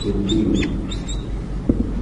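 A marker squeaks on a whiteboard in several short, high strokes over the first second or so, followed by a few light ticks as it writes. A steady low hum runs underneath.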